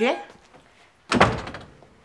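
A single loud, short thump a little over a second in, fading within about half a second.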